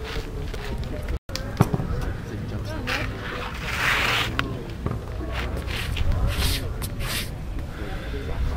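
Outdoor background of indistinct distant voices over a steady low wind rumble on the microphone, with a short hiss about four seconds in and a few light scrapes near the end.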